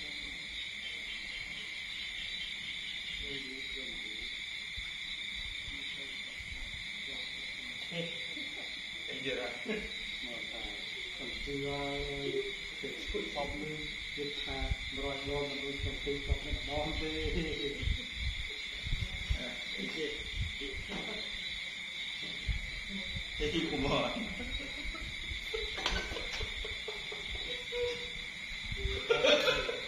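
Steady high-pitched chirring of night insects, unbroken throughout. Indistinct voices talk in the background for several seconds in the middle and again near the end.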